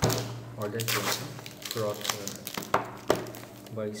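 A small cardboard box being handled, with sharp knocks or taps against it: one at the start and two close together near the end.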